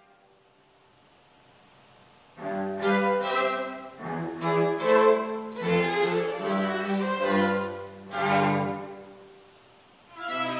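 String trio of violins and cello playing a slow piece with sustained, bowed notes. The playing comes in about two seconds in, its phrases swell and ease, and it dies away near the end.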